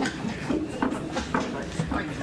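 Indistinct voices talking, with several short knocks and shuffling sounds scattered through.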